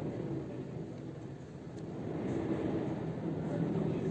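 Strong wind blowing against a high-rise building, heard indoors through shut windows and door: a low, ghost-like 'hoo' sound that swells over the last two seconds. It comes from the wind striking the flat, high up, and the buildings around it.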